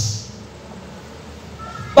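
A man's voice trailing off into a quiet pause of faint room noise, with a faint short tone near the end before he speaks again.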